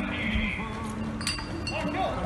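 Street noise: a steady low traffic hum with distant raised voices, and a brief metallic clink about a second in.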